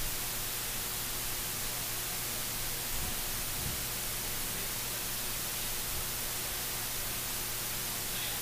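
Steady hiss with a faint low hum: the background noise of an open broadcast microphone feed.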